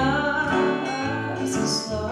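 Live music: a woman singing a slow song over piano accompaniment.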